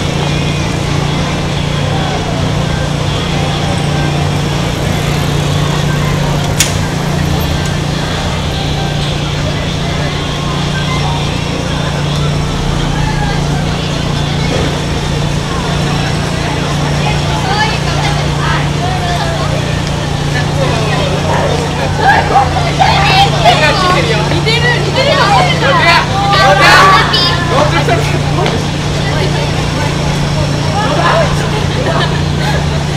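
Busy shopping-street crowd ambience with a steady low hum underneath and a single sharp click about six seconds in. Several seconds of louder voices pass close by near the end.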